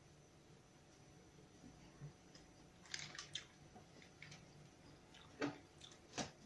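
Near silence with faint chewing of a mouthful of breadcrumb coating: a few soft clicks about three seconds in and a sharper one near the end.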